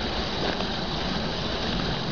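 Steady hiss with no distinct events, of a kind typical of rain or the recording's own background noise.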